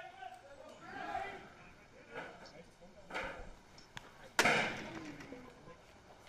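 A pitched baseball striking the batter's hand at the plate: one sharp crack about four and a half seconds in, with a short echo after it. Faint voices can be heard in the background.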